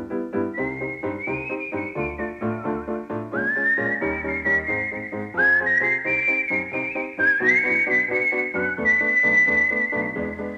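Film-score music: a whistled melody whose notes scoop up into pitch, over a steadily pulsing keyboard accompaniment.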